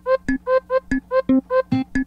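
A single key (C3) played on a software sampler, about five quick notes a second, each triggering a different recorded sample in random round-robin order. The sound changes from note to note among the samples loaded, acoustic guitar, wood flute, kalimba, voice and fretless bass, some pitched lower and some higher.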